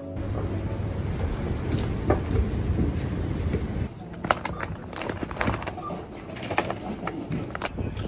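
Outdoor street ambience with a steady low rumble for about four seconds. Then, after a cut, a run of sharp clicks and knocks from shopping being handled at a checkout: a plastic shopping basket and a cloth tote bag.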